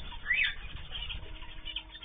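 Small cage birds in an aviary chirping: one loud, short arched call about a third of a second in, then fainter short chirps, over a low steady rumble.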